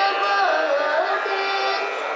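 A boy singing solo into a microphone, his voice gliding and bending between held notes over a steady drone.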